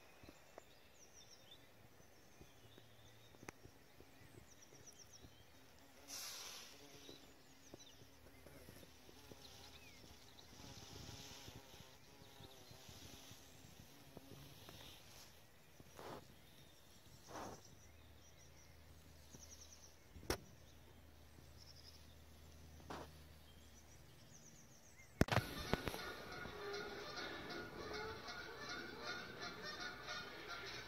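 Quiet open-air background with a few faint bird chirps and some sharp clicks. About 25 seconds in, a flock of geese starts honking in the distance, a continuous racket of overlapping calls.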